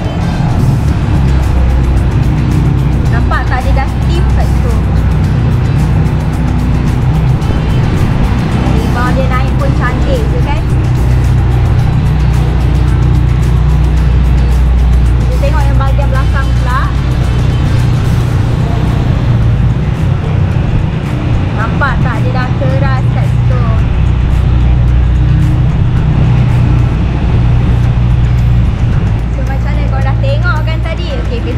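Background music with a heavy, steady bass and short vocal phrases every several seconds.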